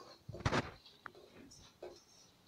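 Chopped parsley being tipped from a small stainless steel bowl into a large steel mixing bowl. There is a short thump about half a second in, then a light click with a brief ring about a second in, and a faint knock near the end.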